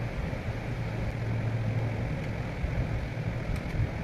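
Steady low mechanical hum of room background noise, with a few faint clicks of hard plastic toy-house parts being handled near the end.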